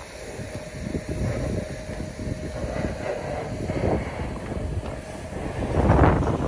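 BMW 3 Series 2.0 engine idling steadily, with wind gusting on the microphone.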